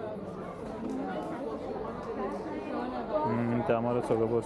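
Market shoppers' chatter: many voices talking at once, with no single voice clear. One nearer, low-pitched voice rises above the rest near the end.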